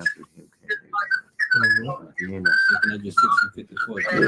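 A person talking, the voice thin with a whistling edge to it, after a short pause at the start.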